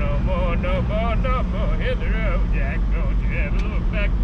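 Steady engine and road noise inside a moving ute's cab, with a man singing over it in a wavering voice.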